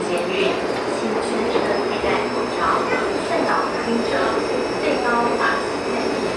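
Taipei MRT metro train running, its steady rumble and hiss heard from inside the carriage, with voices over it.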